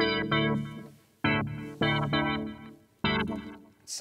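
UK garage chord patch from the Xfer Serum software synthesizer playing a chord progression as stabs, four hits in a broken rhythm, each dying away within about a second. Flanger and ping-pong delay give it a lot of movement.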